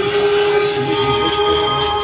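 Haunted-house attraction's background soundtrack: a steady drone of several held tones with a noisy layer over it.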